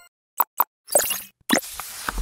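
Two quick pops, then two short rushing swishes: animated-graphics sound effects for a subscribe-button animation.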